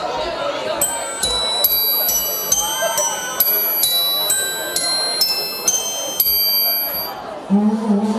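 A bright, bell-toned melody, a run of single high ringing notes about two or three a second, opening a Christmas song over the chatter of a crowded hall. Near the end a low held note comes in as the band joins.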